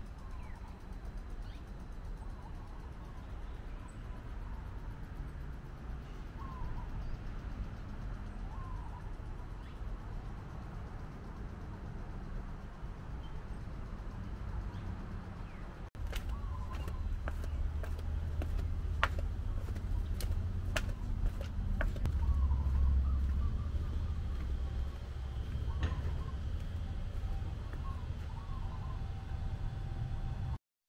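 Outdoor ambience: a steady low rumble with scattered short bird chirps. About halfway through the rumble gets louder, and several sharp clicks stand out over it.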